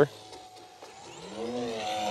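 A small electric RC plane's motor and propeller whine faintly as it passes low. About a second and a half in comes a short, faint voice-like hum that rises and falls in pitch.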